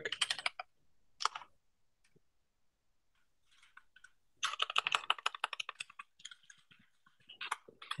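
Typing on a computer keyboard in short bursts with pauses, including a quick run of keystrokes from about four and a half to six seconds in.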